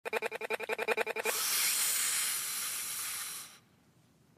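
Produced intro of a hip-hop track: a pitched sound stuttering at about twelve pulses a second for just over a second, then a steady hiss that fades out shortly before the end.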